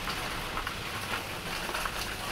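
Rain falling steadily, an even patter of drops.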